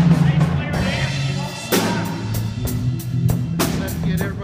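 A live band playing on stage: a drum kit struck in quick regular hits from about halfway in, over low held bass notes.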